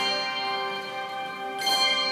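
Handbell choir ringing: a chord of many handbells rings on, and a new chord is struck about one and a half seconds in and left to sound.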